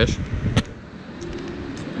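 A sharp click about half a second in, then a low, steady rumble of street traffic.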